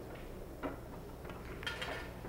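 Pool shot: the cue tip clicks against the cue ball about two-thirds of a second in. About a second later comes a sharper, briefly ringing clack as the cue ball strikes an object ball. The shot is struck softly, under hit.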